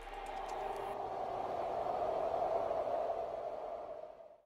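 A suspense drone sound effect: a steady hiss with a faint hum in it, swelling slowly and fading near the end.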